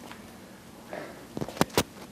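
Handling noise of a miniature lavalier microphone wrapped in a moleskin ring as it is fingered and pressed against skin and fabric: a soft rustle about a second in, then a few sharp clicks near the end.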